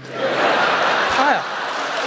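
Live theatre audience laughing and applauding at a punchline, the sound swelling quickly just after the start and then holding steady.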